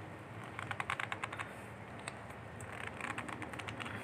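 Faint clicking and scraping of steel pliers gripping and working a heat-softened, glued pipe stub out of a PVC fitting, in two bursts of rapid small clicks.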